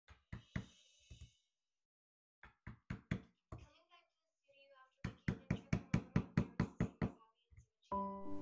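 Hammer striking a wood chisel to carve a candle hole into a bark-covered log: a few scattered knocks, then a fast even run of about a dozen strikes at roughly five a second near the end.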